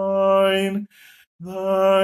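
A man singing a slow hymn solo, holding long steady notes, with a short pause for breath about a second in before the next note.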